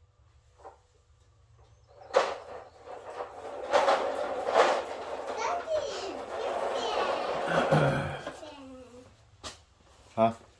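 A young child's voice making sounds without clear words, starting about two seconds in and fading near the end.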